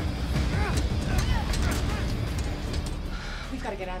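Film soundtrack mix: a deep steady low rumble under music, with short falling vocal cries in the first two seconds, and a man's voice starting right at the end.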